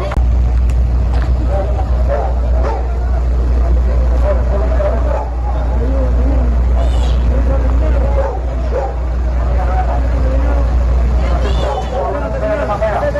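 Several people talking and calling out at once over a steady low rumble from the idling army truck's engine.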